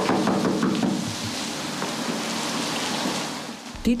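Steady heavy rain falling, a dense even hiss that fades away shortly before the end.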